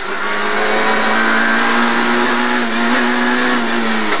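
Citroën Saxo rally car's engine heard from inside the cabin, running hard at high revs with no gearchange. Its pitch creeps up over the first couple of seconds, then holds steady.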